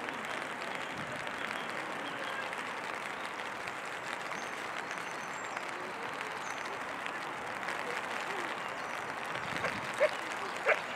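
Steady rain falling, an even hiss with no break.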